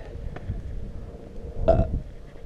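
A person burps once, briefly, near the end.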